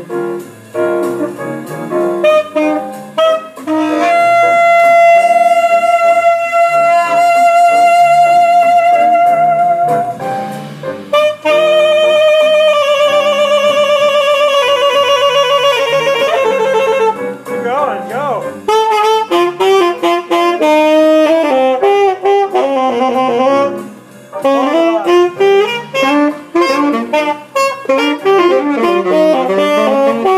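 Saxophones improvising on a B-flat blues: a long steady held note, then a held note with wide vibrato that bends downward, then quick runs of short notes.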